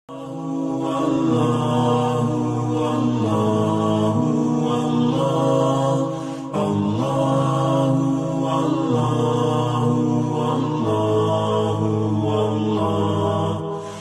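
Chanted vocal theme music: a voice holding long notes that shift slowly in pitch, with no beat, and a short break about halfway through.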